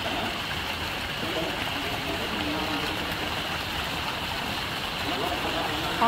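Fountain jets splashing steadily into a pool: a continuous, even rush of falling water.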